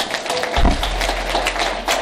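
Audience applauding, many hands clapping, with a single low thump about half a second in.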